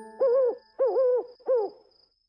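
A cartoon owl character hooting three times, 'hoo, hoo, hoo', each hoot short with a wavering pitch, the last one shortest. Faint steady cricket chirping runs underneath.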